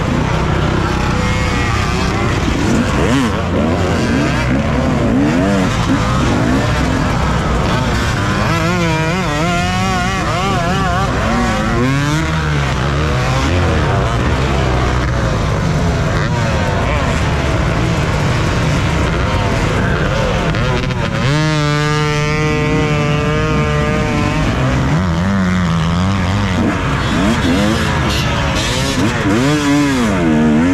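Two-stroke dirt bike engines revving hard and unevenly in a pack, the rider's KTM 250 EXC loudest, its pitch rising and falling with the throttle. About two-thirds of the way through, one engine holds a steady high note for a few seconds.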